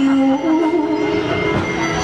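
Taiwanese opera (gezaixi) music: a slow melodic phrase of long held notes that step up and down in pitch.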